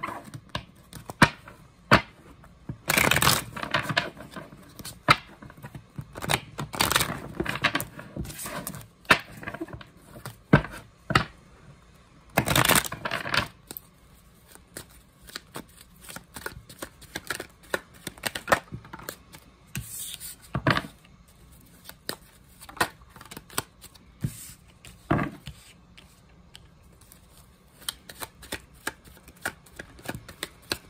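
A tarot deck being shuffled by hand, overhand: an irregular patter of cards sliding and slapping against each other. A few longer, louder bursts of rustling come about 3 and 12 seconds in.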